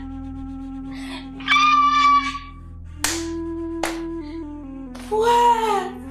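Mournful background music, with a steady held low note under two wavering, wailing melodic phrases. Two short, sharp hits sound about three and four seconds in.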